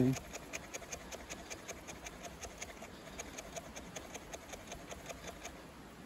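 Small ESEE CR 2.5 fixed-blade knife with a carbon-steel blade shaving thin tinder curls off a wooden stick. Quick, faint, even scraping strokes, about three or four a second.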